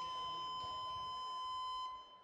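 A single steady electronic beep, one unchanging mid-high tone that holds for about two seconds and then cuts off, of the kind used to bleep out words.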